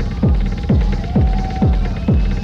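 Techno music: a pounding kick drum about every half second, around 130 beats a minute, over a constant deep bass, with a thin higher tone bending and holding briefly midway.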